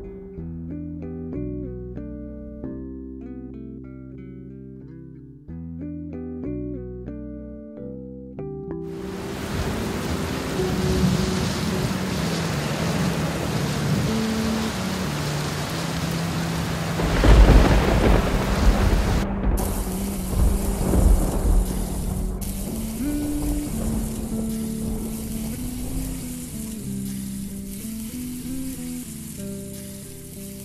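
Light background music, then a rain sound effect comes in about a third of the way through. A loud thunderclap comes a little past halfway. A steady sizzling hiss like meat frying follows, with the music carrying on underneath.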